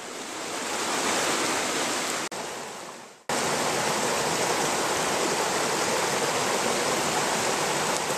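Shallow stream running over rocks: a steady rush of water. It fades out about three seconds in, then cuts back in suddenly and stays steady.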